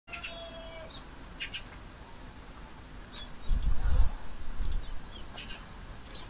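Small birds chirping in short clusters of high calls several times. About three and a half seconds in, a low rumble on the microphone, the loudest sound here, lasts about a second.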